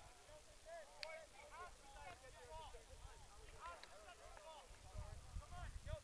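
Faint shouts and calls from several distant people on and around a soccer field, overlapping one another. A low rumble rises near the end.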